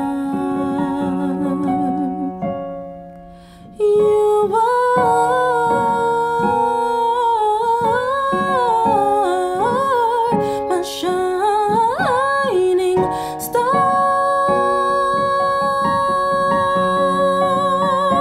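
A woman singing a slow, wavering vocal line with vibrato over keyboard chords. The chords ring and fade at first, the voice enters about four seconds in, climbs to a high peak near the middle, then settles into a long held note with vibrato.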